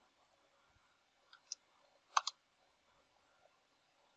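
Four faint, sharp clicks from a computer keyboard and mouse, two about a second and a half in and the loudest pair close together just after two seconds, as a terminal command is entered and run.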